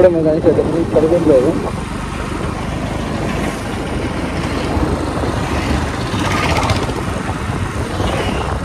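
A motorcycle being ridden, heard from the rider's seat: a steady mix of engine and wind noise on the microphone, after a few spoken words at the start.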